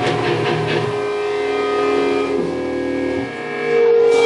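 Live rock band with electric guitars and drums playing, chords left to ring with a few drum hits in the first second. The sound dips briefly a little after three seconds, then a loud held note comes in near the end.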